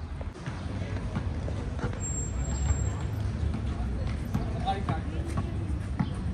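Outdoor park ambience: a steady low rumble with scattered short knocks and distant voices of people, clearest about two-thirds of the way through.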